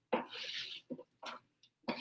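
Spatula scraping and tapping on an electric griddle top while tossing bananas in sauce: a short scrape, then a few light taps.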